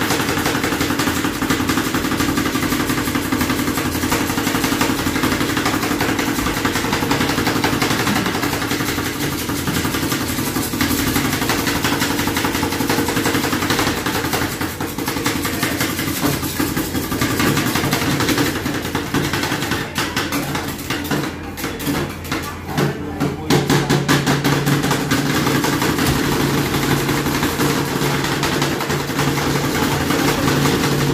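Metal spatulas rapidly chopping and scraping ice cream on the steel cold plate of a rolled ice cream counter, a dense clatter of taps, over a steady machine hum that deepens and grows louder a little past two-thirds of the way through.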